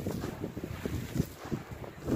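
Crushed charcoal granules and powder falling from gloved hands onto a charcoal pile, making a run of soft, irregular low crackles and thuds.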